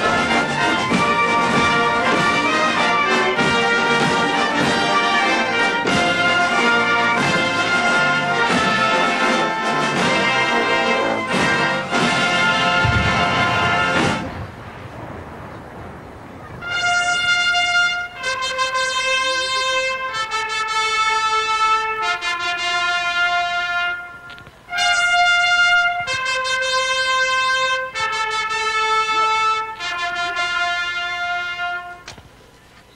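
Military brass band playing: a full chorded passage ends about 14 seconds in, and after a short lull trumpets sound a slow fanfare of long held notes, one pitch at a time with short breaks between them.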